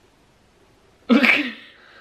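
A person suddenly bursting into laughter about a second in, after a silent pause; the burst is sharp and dies away over about half a second.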